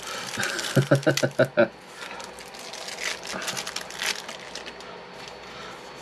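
Wrapping crinkling and tearing as it is worked off a deck of game cards by hand, an irregular rustle with small sharp crackles. A brief mutter or laugh comes about a second in.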